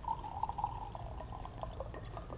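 Liquid poured into a glass: a gurgling pour that lasts about a second and a half, then stops.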